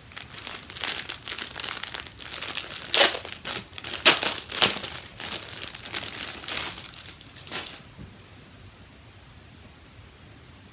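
Gift packaging crinkling and rustling as a small wrapped cloth item is unwrapped by hand, with a few louder crackles about three to five seconds in; the handling stops about eight seconds in.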